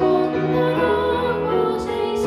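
A boy singing a song into a microphone over instrumental accompaniment, holding long, sustained notes.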